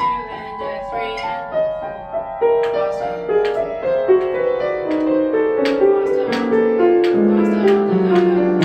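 Grand piano being played: a flowing line of notes stepping steadily downward in pitch and growing louder, with lower bass notes coming in near the end.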